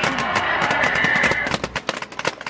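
Paintball guns firing in rapid, irregular pops over music playing. A low rumble underneath drops away near the end.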